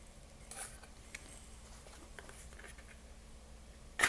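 Faint handling noise from a Marlin 336W lever-action rifle being lifted and tipped upright: a few soft rustles and light clicks, over a low steady room hum.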